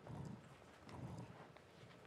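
Two faint, dull thumps about a second apart, with a few light clicks. This is handling and movement noise as speakers settle into stage armchairs and lapel microphones are fitted.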